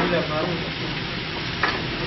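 Clear plastic bag crinkling as it is handled, with a brief sharp click about one and a half seconds in.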